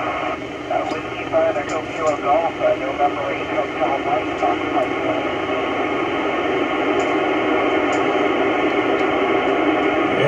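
Icom IC-9700 transceiver's speaker playing the AO-91 satellite's FM downlink. A distant station's voice comes through thin and noisy for the first few seconds, then gives way to steady FM hiss that grows a little louder toward the end as the satellite signal fades out.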